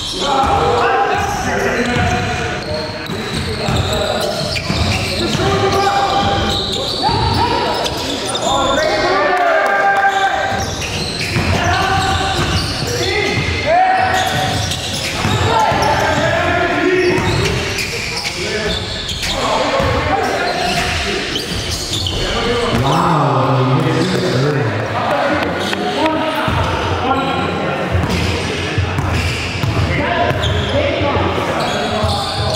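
Basketball game in a gym hall: a ball bouncing on the hardwood floor, along with indistinct players' voices and calls, all echoing in the hall.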